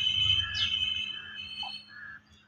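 Birds chirping, one short descending chirp about halfway through, over a steady high whistle-like tone that stops near the end.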